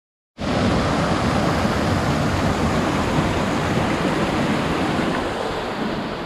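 Turbulent spring water gushing out from under a stone arch into a channel, a loud, steady rush of water that starts about half a second in.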